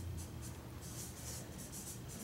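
Felt-tip marker writing on flip-chart paper: a run of soft, uneven scratchy strokes.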